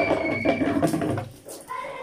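A high, drawn-out whining cry held for about a second, with lower wavering vocal sounds under it, fading out about a second and a half in.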